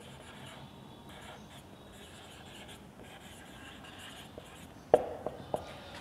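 Felt-tip marker writing on a whiteboard: faint, broken scratching strokes as letters are written. A few light knocks come near the end.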